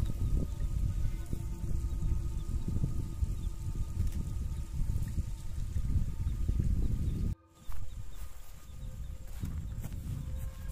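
Wind buffeting the microphone in uneven gusts, with a few faint steady tones underneath. The sound cuts out briefly about seven seconds in, and after that the wind is softer.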